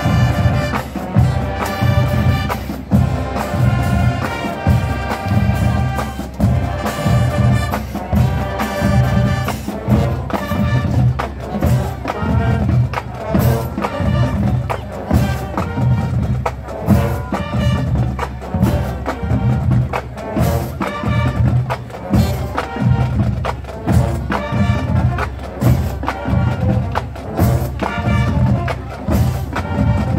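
Combined marching bands playing: brass and winds carry the tune over a steady beat of drums and front-ensemble percussion.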